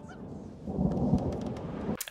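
Low rumble of thunder swelling about half a second in, a film sound effect for the storm of the Flood breaking.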